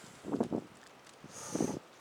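A man breathing heavily at rest, with two audible breaths: one about half a second in and one near the end.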